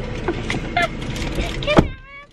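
Steady rumbling noise in a parked vehicle with brief bits of voice, broken by one loud thump near the end, after which the sound drops sharply to near quiet.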